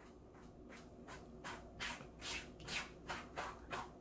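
A cat making noise: a run of short, faint rustling strokes, two or three a second, that start about a second in.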